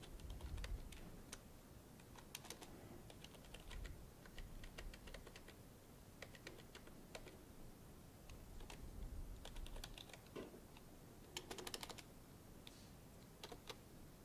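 Faint typing on a computer keyboard: irregular single keystrokes, with a quick run of keys about three-quarters of the way through.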